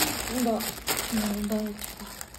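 Plastic grocery packaging on potatoes and dill crinkling as it is handled, with brief voice sounds over it.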